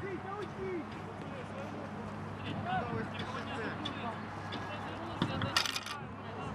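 Players' shouts and calls carrying across an outdoor football pitch, short and scattered, over a steady low hum. Near the end comes one short, sharp noise.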